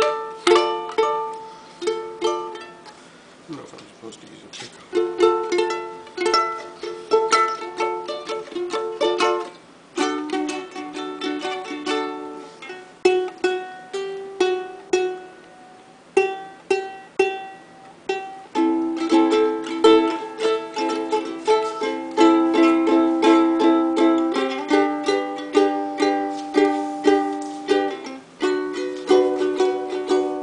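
Kamaka ukulele strummed, moving through a series of chords, with a brief lull about three seconds in and fuller, steadier strumming in the second half.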